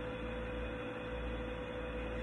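Steady low background hum with a thin, steady higher tone over it and faint hiss; nothing starts or stops.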